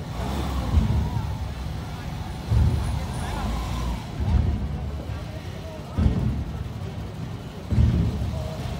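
Large barrel drums of a marching drum corps struck together in a slow, even beat, one deep boom about every two seconds. Under the beats run a low vehicle rumble and crowd voices.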